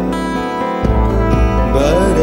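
Acoustic guitar music from a live unplugged performance: held notes ringing, a fresh plucked chord about a second in, and a note sliding upward near the end.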